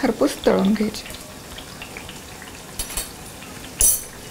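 Chakalis deep-frying in oil in a steel pan on low to medium heat: a soft, steady sizzle of bubbling oil, with a short sharp click just before the end.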